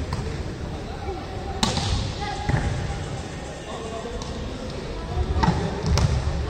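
A volleyball being struck hard during a rally: a sharp smack about one and a half seconds in and another near the end, over players' and spectators' voices.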